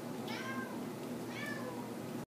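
A cat meowing twice, two short calls that rise and fall in pitch, about a second apart.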